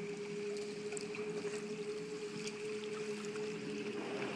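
Small electric boat underway: water washing along the hull with faint scattered ticks and splashes, over a steady hum.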